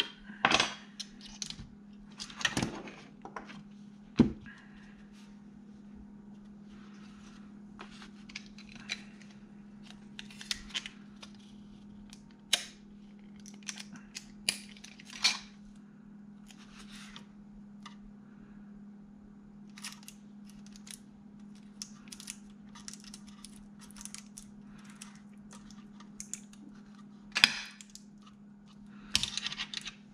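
Scattered clicks and knocks of a metal drive bracket and a plastic external hard-drive enclosure being handled and fitted together on a wooden desk, with a few louder knocks in the first few seconds and near the end. A steady low hum runs underneath.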